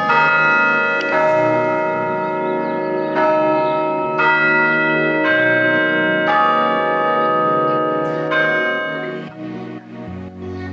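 Church bells ringing, a new stroke on a different note about every second, with some gaps of two seconds; each note rings on and overlaps the next.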